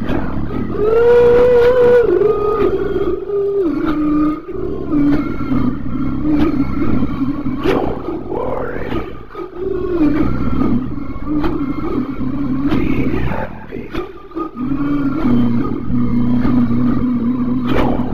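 A deep, monstrous growling and moaning voice in long drawn-out calls that slide and step in pitch, breaking off briefly a few times.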